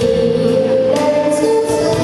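A girl singing into a handheld microphone over a karaoke backing track, holding long notes that step from one pitch to another.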